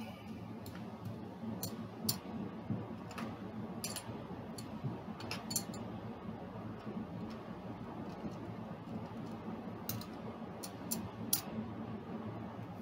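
Casino chips clicking as they are picked off a stack and set down on a felt craps layout: about a dozen light, irregularly spaced clicks.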